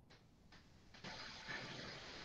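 Near silence: faint room tone, with a low, even hiss that comes up about a second in.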